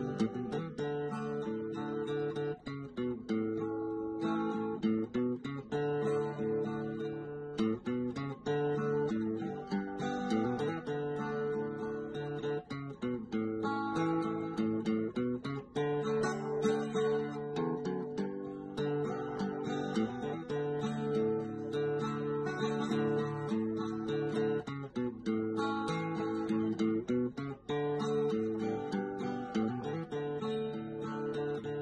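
Background music: strummed acoustic guitar, its chords changing every few seconds.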